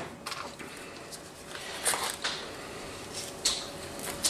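Quiet handling sounds: a few brief rustles and scrapes as gloved hands set down a knife and work a piece of cut mullet onto a fishhook.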